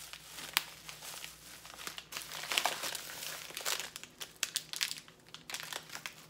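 Plastic wrapping crinkling by hand, with irregular sharp crackles, as a sealed package is unwrapped.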